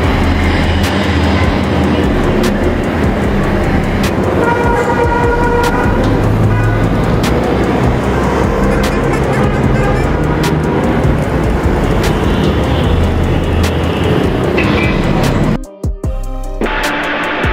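Bus engine sound effects with horn toots, mixed over background music; the sound drops out briefly near the end.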